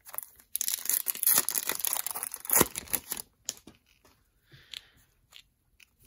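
Foil trading-card pack wrapper torn open and crinkled by hand: a dense crackling tear starting about half a second in and lasting close to three seconds, then a few soft rustles as the cards come out.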